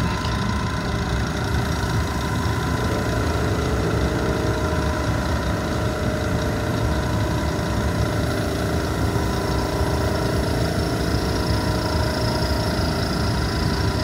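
Laboratory vacuum pump of a rotary evaporator running with a steady hum while the vacuum is slowly released; its tone shifts slightly about three seconds in.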